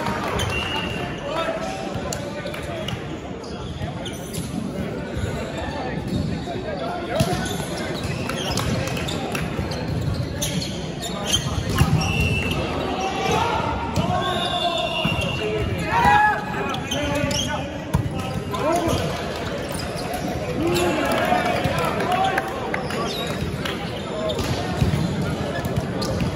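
Volleyball played in a large hall: players' voices and chatter echo, broken by several sharp thuds of the ball being struck and bouncing on the wooden court.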